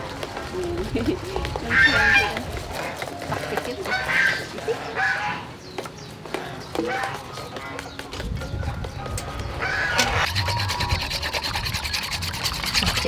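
Domestic fowl calling several times in short bursts, over soft stirring of batter in a steel mixing bowl.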